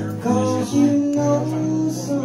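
Live solo performance: guitar played with a voice singing held notes.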